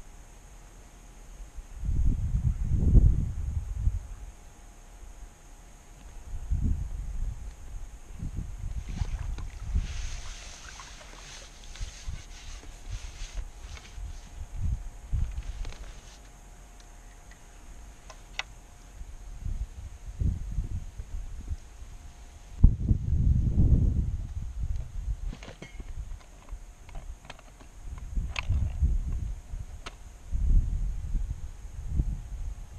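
Wind gusting on the microphone in low rumbles, again and again, loudest a little before the end. About ten seconds in come several seconds of splashing water as a hooked fish is drawn to the landing net at the bank.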